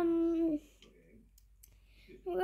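A young person's voice holding a drawn-out, steady hesitation hum for about half a second, then a few faint clicks.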